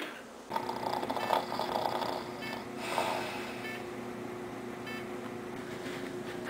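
A person snoring, with rough breaths in the first few seconds over a steady faint hum.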